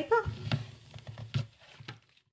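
Hands handling a pad of watercolour paper: three short, sharp clicks and light paper handling noise, after the last spoken word.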